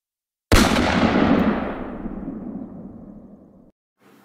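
Edited-in sound effect of a single sudden loud bang about half a second in. It has a long fading rumbling tail and cuts off abruptly after about three seconds.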